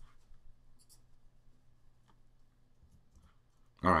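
A few faint computer mouse clicks, spaced about a second apart, over a low steady hum.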